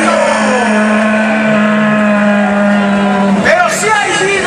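An amplified voice over a festival PA holds one long note for about three seconds, then breaks into gliding, shouted sounds near the end.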